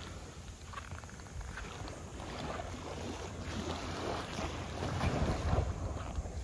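Small, gentle waves washing up and lapping at the edge of a sandy beach, with wind rumbling on the microphone.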